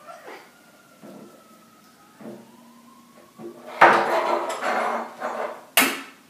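Wooden spoons stirring and knocking against plastic mixing bowls while glue is squeezed in, with a few faint knocks at first, a louder stretch of noisy clatter about four seconds in, and a sharp knock just before the end.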